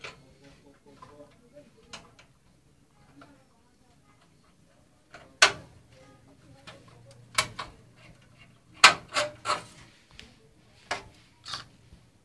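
A string of sharp knocks and clicks at irregular intervals, starting about five seconds in, with a quick run of three about nine seconds in.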